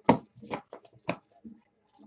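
A handful of short, light taps and clicks of trading cards and a card holder being handled and set down on a desk mat. The first tap is the loudest.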